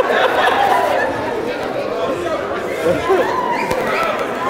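Several people talking at once in a large hall: overlapping, indistinct chatter with no single clear voice.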